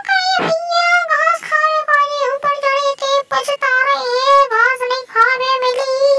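A very high-pitched singing voice, with phrases held and gliding in a melody, on a music track.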